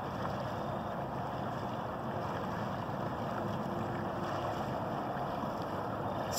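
Steady low rushing noise, like wind on the microphone, with no distinct events.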